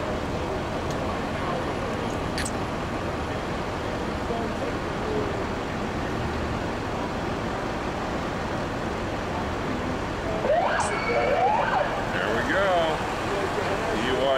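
Steady street traffic noise. About ten seconds in, a police siren sounds for a few seconds, its pitch rising and falling quickly.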